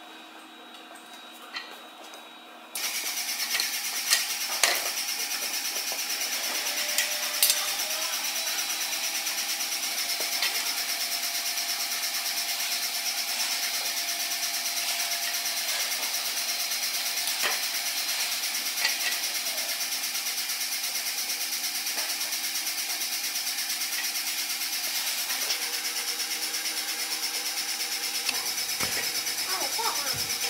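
A steady machine-like hiss and hum that comes on suddenly about three seconds in and runs on, with scattered light clicks and knocks.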